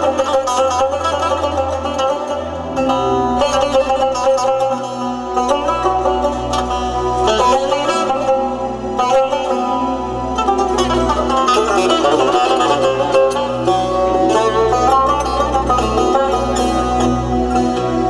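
Azerbaijani tar played solo in fast plucked runs of notes, amplified. A low sustained bass comes in underneath about three seconds in.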